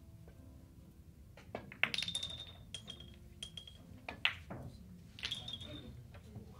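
Carom billiard balls clicking against each other and against the small pins of a five-pins table: a series of sharp clinks, some with a short ringing after them, loudest about two seconds in and again just after four seconds.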